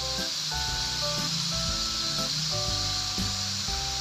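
Beef tapa frying in hot oil in a wide wok, a steady sizzle, with background music playing over it.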